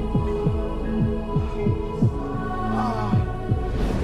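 Dramatized heartbeat sound effect: low throbbing thumps that drop in pitch, about three a second and a little uneven, over a steady droning hum, standing for a heart attack.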